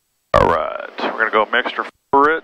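Speech: a voice talking, cutting in abruptly about a third of a second in after dead silence.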